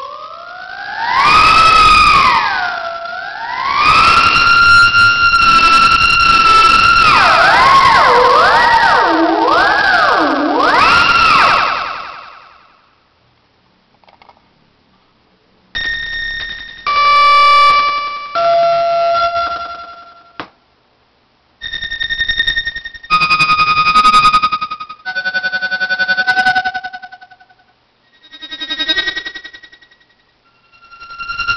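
Thereminator theremin app on an iPhone 3G playing an electronic theremin-style tone that swoops up and down in pitch, wobbling quickly for a few seconds, for about twelve seconds. After a short pause comes a series of separate held notes at different pitches and in several different tones.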